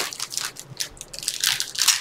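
Trading-card pack wrappers and cards being handled: irregular crinkling and crackling of foil packaging and card stock.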